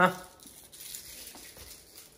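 A short spoken 'ha' at the start, then faint crinkling of sweet wrappers being handled and unwrapped.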